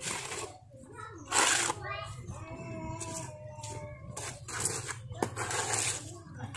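Hand trowel scraping over freshly poured wet concrete in short strokes while the slab is smoothed. A high, drawn-out call is heard in the middle.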